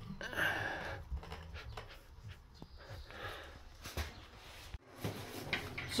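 Faint handling noise as a ceramic hexagon tile is pressed and slid into tile adhesive: a short scrape about half a second in, then a few light taps.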